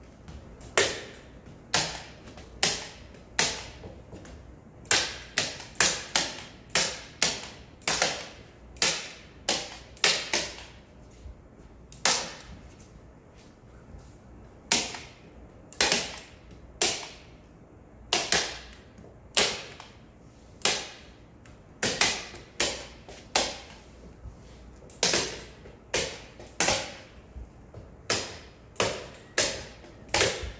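Hand staple gun firing again and again, a sharp snap roughly once a second with a couple of short pauses, as paper is stapled to the edge of a wooden frame.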